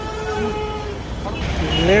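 Road traffic: a vehicle horn held steadily for about a second over the low rumble of passing engines. A man's voice comes in near the end.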